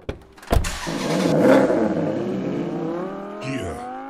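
A car engine accelerating as an intro sound effect, its pitch rising steadily. A loud low thump comes about half a second in.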